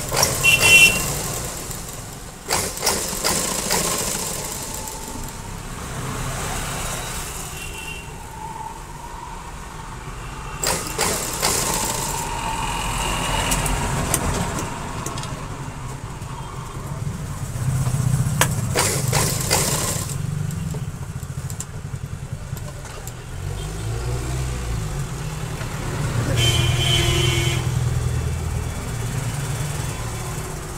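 Electric sewing machine stitching pink piping onto a kurta neckline in several short runs of a second or two, over a steady low hum.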